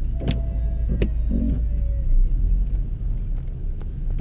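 Low, steady rumble of a car's engine and tyres heard from inside the cabin as it creeps through slow traffic, with two sharp clicks near the start.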